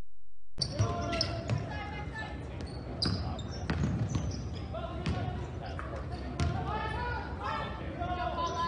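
A basketball bouncing on a hardwood court with irregular knocks, amid indistinct shouts and chatter from players and spectators. It starts abruptly about half a second in.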